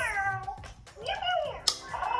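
FurReal Walkalots unicorn cat toy meowing twice: the first meow falls in pitch, the second rises and then falls.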